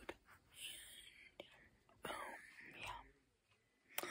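A girl whispering softly in two short phrases, then a near-silent pause near the end.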